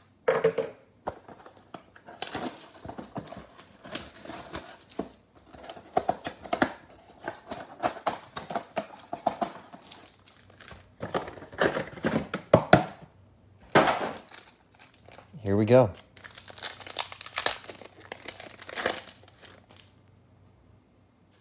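Plastic wrap and foil trading-card packs crinkling and tearing as a cardboard mega box is opened and its packs are unwrapped, in irregular rustling bursts.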